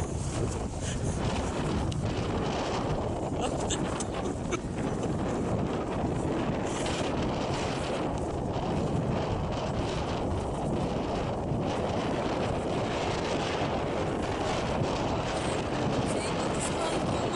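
Wind buffeting a handheld camera's microphone: a steady rumbling noise, heaviest in the low end, with a few small ticks from handling.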